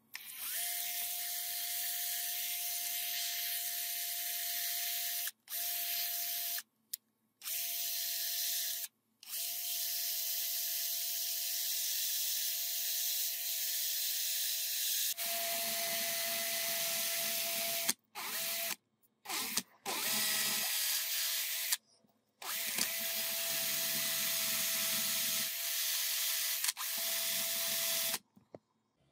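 Cordless drill spinning a brass lighter part held in a fold of abrasive paper: a steady motor whine with a sanding hiss. The drill stops briefly several times and restarts.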